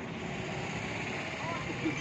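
Steady road-traffic noise, a vehicle running past, with faint voices near the end.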